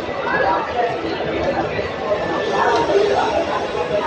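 Background chatter of several people talking at once, with voices overlapping and no single voice standing out.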